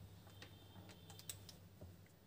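Near silence broken by a few faint clicks and taps, the strongest just over a second in, from a felt-tip marker being picked up and handled.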